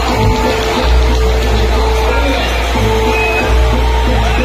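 Loud amplified accompaniment music for a Barong jaranan dance. A steady deep bass and a long held mid-pitched tone run through it without a break.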